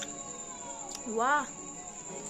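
A woman's short drawn-out "wow", its pitch dipping and then rising and falling, about a second in, over soft background music with steady held notes.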